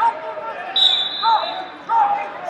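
A steady, high whistle blast of about a second, starting a little under a second in, over the chatter of a large, echoing wrestling hall, with short squeaks near the middle and again near the end.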